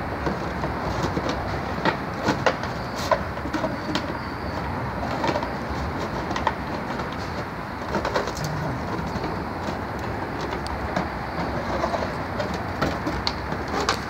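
A plastic bag crinkling and rustling in scattered sharp crackles as a dog grips and carries it in its mouth, over steady outdoor background noise.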